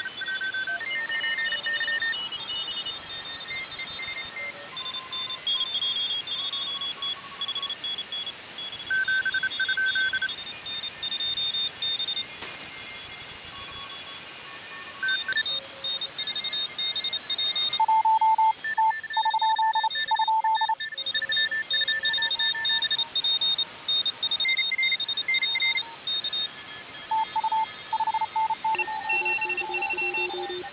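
Morse code (CW) signals from a SunSDR2 DX receiver tuned to the 20-metre band: several stations keying at once at different pitches over steady band hiss, contest stations calling "TEST".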